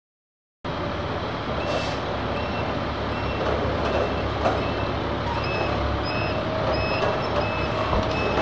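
Truck-yard noise starting abruptly just under a second in: a steady engine rumble with a truck's reversing alarm beeping at an even pace, about two beeps a second.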